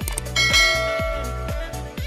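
Background music with a steady beat, and a bright bell chime about a third of a second in that rings out for over a second: the notification-bell sound effect of a subscribe-button animation.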